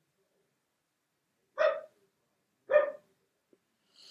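A small dog barking twice, two short high yaps about a second apart.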